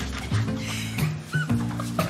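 Tense background score with a pulsing low bass line whose notes change every half-second or so. A brief high squeak sounds about a second and a half in.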